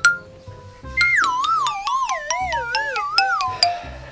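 Comedic scene-change music: starting about a second in, a wavering, wobbling tone slides downward for about two and a half seconds over a light beat.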